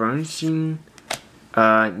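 A man's voice reading out trading card names in short bursts, with a single sharp click a little past halfway.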